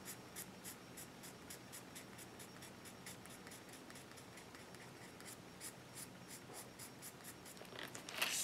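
Colored pencil lightly scratching on paper in short downward flicking strokes, a faint, even run of about four strokes a second, as when shading hair with very light pressure.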